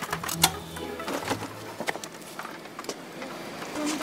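Background music with a few sharp knocks and clatters, the loudest about half a second in, as a fallen small motorbike is handled and lifted upright off the road.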